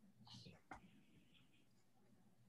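Near silence in a room, broken by a brief faint whisper and then a single small click a little under a second in.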